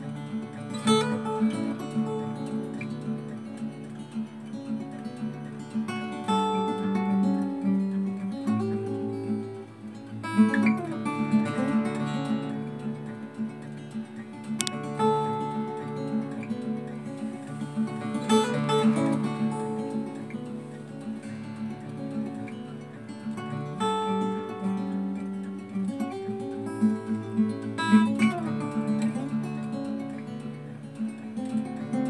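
Solo acoustic guitar played live, a picked melody over bass notes with occasional strums.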